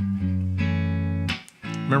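Electric guitar playing an F sharp minor 7 barre chord: the chord rings, is struck again about half a second in, then is damped and cuts off about a second and a half in.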